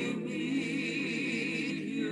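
Choir singing, holding long notes with a wavering vibrato.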